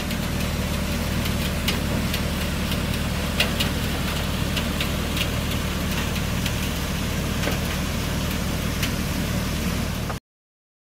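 Steady hum of machinery engines at a placer-gold wash plant (excavator and high-banker equipment running), with scattered sharp clicks over it.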